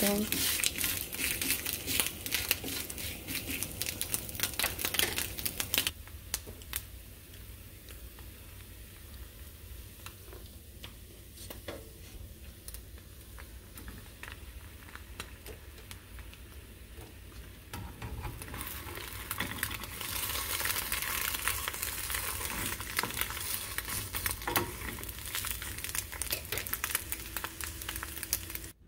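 Food sizzling in hot pans: a ham slice frying on a nonstick griddle (comal) while a spatula presses and scrapes it, with many quick clicks and scrapes over the first few seconds. Then quieter frying of an egg with ham in a small frying pan, the sizzle growing louder in the last ten seconds.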